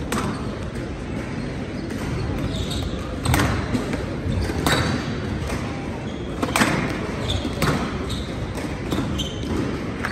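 A squash rally: the ball is struck by rackets and smacks off the court walls in several sharp hits a second or two apart, ringing in a large hall. Spectators talk steadily underneath.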